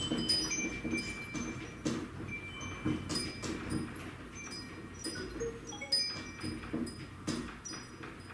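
Hanging metal wind chimes tinkling over and over, many light strikes with clear high ringing tones, as the earthquake's shaking keeps them swinging. A low rattling sits under the ringing.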